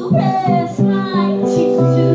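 A woman singing live with guitar accompaniment. Her sung phrase glides and ends about a second in, leaving steady held guitar chords.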